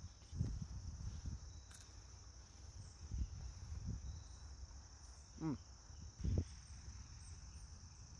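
A man tasting a raw Japanese knotweed shoot: a few dull low bumps and a short "mm" about five and a half seconds in, with a steady high-pitched trill running underneath.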